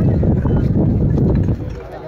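Loud, irregular low buffeting on the microphone over the voices of a crowd outdoors; the buffeting drops away about one and a half seconds in.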